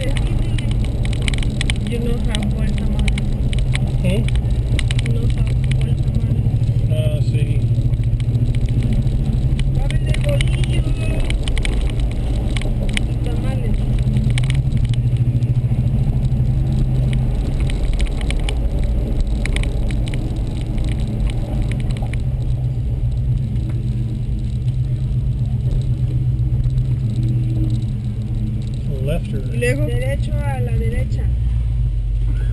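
Car driving slowly through town streets, heard inside the cabin: a steady low engine and road rumble, with faint voices over it.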